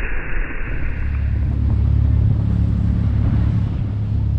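A boat under way: a steady low engine rumble with the rushing hiss of its wake and wind, coming in with a cut about a second in after a short stretch of wind and water hiss.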